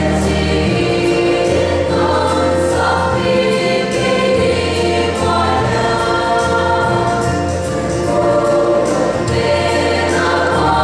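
Women's choir singing a gospel hymn together, holding long notes over low sustained bass notes that change every second or two.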